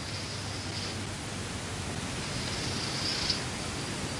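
Chalk drawn along a blackboard in two long strokes, a faint high scratching, the first in the opening second and the second from a little past two seconds in until it stops abruptly, over a steady hiss.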